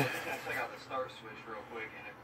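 Faint talk in the background under low room noise.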